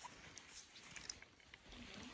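Near silence, with a few faint crunching clicks of footsteps in deep snow.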